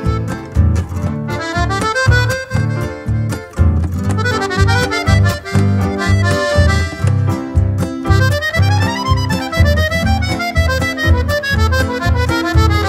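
Instrumental break of a chamamé, led by accordion playing quick melodic runs over a steady, pulsing low accompaniment. There is no singing.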